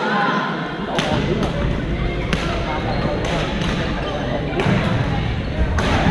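Badminton rackets striking shuttlecocks in a large gym hall: sharp, irregularly spaced hits, about five of them, over the chatter of many players.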